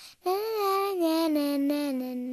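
A high singing voice in a song, holding long notes that step down in pitch after a brief break at the start, with little or no audible accompaniment.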